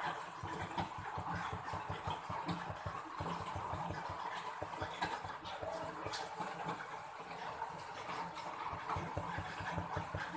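A cat's low, continuous rumble, pulsing rapidly.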